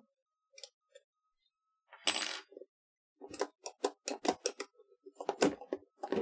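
Metal hand tools (pliers) being handled: a metallic clink with a short ring about two seconds in, then a quick run of light clicks and taps as they are moved and set down on the printer's base.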